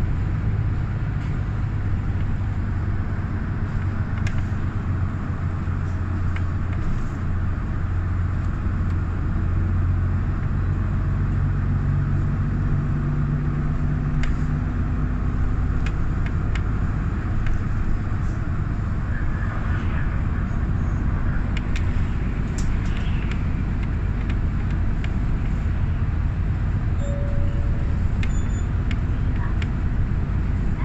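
City bus running along a street, heard from inside the passenger cabin: a steady low engine hum with road noise. The engine note rises in pitch as the bus picks up speed about halfway through, with scattered light rattles and clicks.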